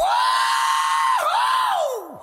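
A single high, held vocal wail in a rock song, with the band and bass dropped away beneath it. The note dips briefly just past halfway, comes back, then falls off at the end.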